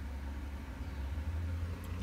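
A steady low hum with faint background hiss.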